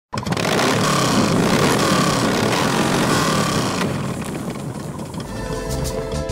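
Motorcycle engine revving hard, a loud roar that starts suddenly and holds for about four seconds before fading. Music with a heavy bass beat comes in near the end.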